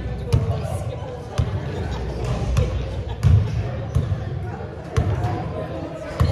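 A basketball bouncing on a gym floor. Sharp single bounces come roughly once a second, about five or six in all.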